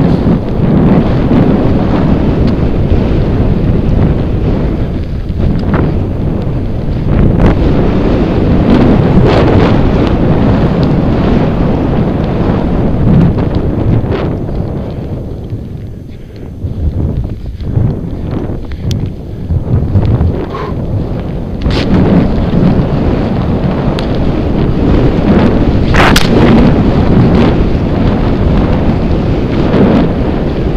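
Heavy wind buffeting on the microphone of a camera carried by a skier moving fast through powder, a loud low rumble that eases for a couple of seconds around the middle as the skier slows. A few short sharp clicks sound over it in the second half.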